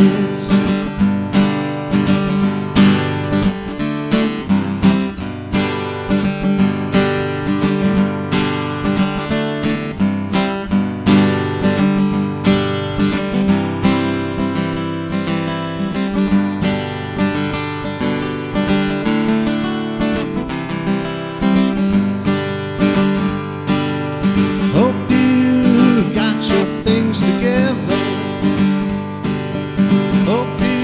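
Acoustic guitar strummed in a steady, rhythmic chord pattern, an instrumental break with no singing.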